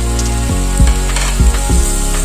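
Chopped tomatoes and onions sizzling in oil in an aluminium pressure cooker as ground spices are stirred in, with a brief louder hiss about a second in. Background music with a drum beat plays throughout.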